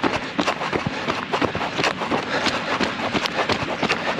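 A runner's footfalls on a wet gravel path, a steady run of short scuffing thuds heard close to the microphone.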